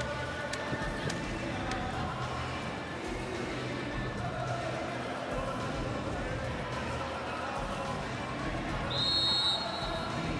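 Indoor arena background of music over the PA and voices, then a referee's whistle blown once about nine seconds in, held for under a second, signalling the serve.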